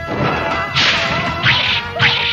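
Two sharp swishing whoosh effects of fight blows, less than a second apart, over faint steady tones of background music.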